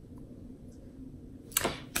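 Quiet room tone with a faint steady low hum, then near the end a short, sharp rush of breath from a person.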